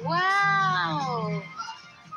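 A single drawn-out, meow-like wailing call that rises slightly and then falls in pitch over about a second and a half, over background music.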